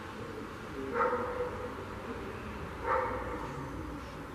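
Two short animal calls, about two seconds apart, over a steady low outdoor background noise.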